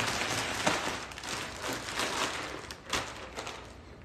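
A plastic zip-top bag crinkling and rustling as it is shaken and kneaded by hand to mix shredded cheese into a chicken filling, with a few sharper crackles, getting quieter toward the end.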